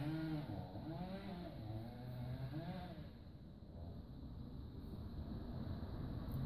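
A woman's voice humming softly for about the first three seconds and again briefly near the end, over a steady low background hum.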